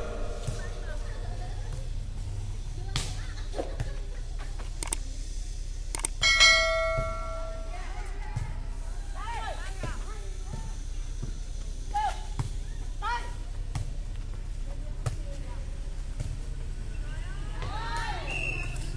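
Air-volleyball rally: occasional sharp slaps of hands on the light ball and short calls from the players. About six seconds in there is a steady held tone of about a second, and a low hum runs underneath throughout.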